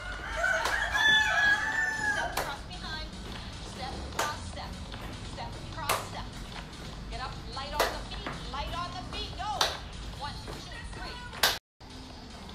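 A rooster crowing once, a long call with a drawn-out final note in the first two seconds, over quieter background music with a beat about every two seconds.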